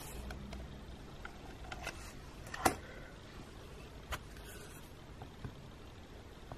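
Quiet handling of nail-stamping tools: a few small faint clicks and taps, the sharpest about two and a half seconds in, over low room noise.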